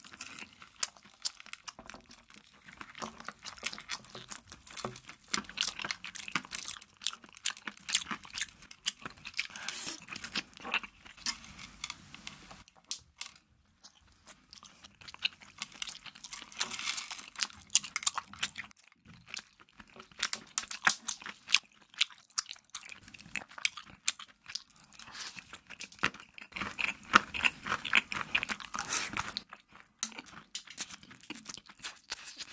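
Close-miked chewing and crunching of rainbow candy covered in sugar sprinkles: a dense run of crisp crackles, with a couple of brief pauses.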